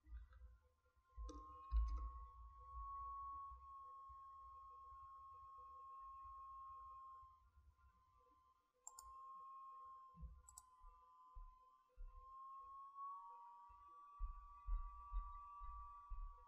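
Faint background noise with a thin, steady, slightly wavering whine that drops out for a moment in the middle, low rumbles, and two sharp clicks about nine and ten and a half seconds in.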